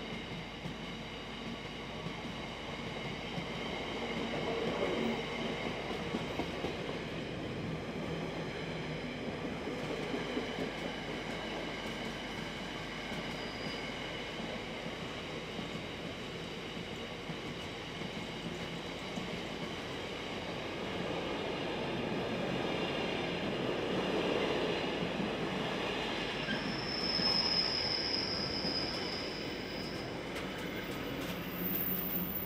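Freight train of container flat wagons rolling through: a steady rumble of wheels on rail with high-pitched wheel squeal throughout, and a sharper, brighter squeal near the end.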